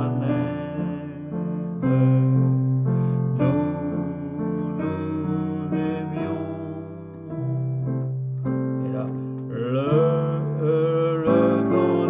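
Yamaha digital piano playing a slow chord accompaniment in C: held left-hand bass notes under right-hand chords, changing every second or two.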